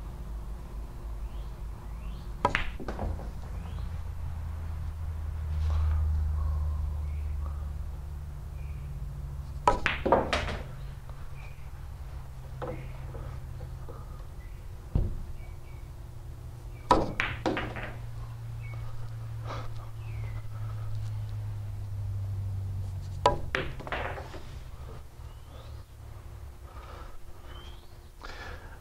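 Billiard shots: the cue tip clicking on the cue ball and balls clacking against each other and the cushions, in short clusters of two or three sharp knocks about every six or seven seconds. Between the shots there is a low rumble of balls rolling across the cloth.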